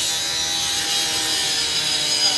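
Firefighter's rotary cut-off saw running steadily as its disc cuts through a car's sheet metal.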